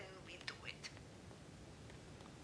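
Faint whispering and breath sounds with a few soft mouth clicks, barely above room tone.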